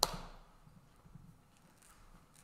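A single sharp hand clap at the start, dying away quickly in the room, then quiet room tone.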